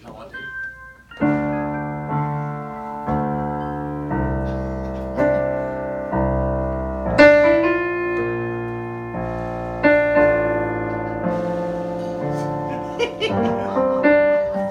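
Electric piano playing a slow series of descending chords, a new chord struck about once a second and left to ring as the lower notes step down.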